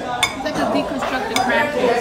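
Cutlery and plates clinking on a dinner table, with two sharp clinks about a second apart, over the murmur of people talking.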